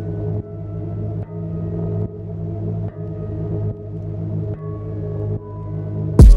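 Instrumental background music: a sustained deep bass and ambient synth chords, the pattern restarting just under once a second.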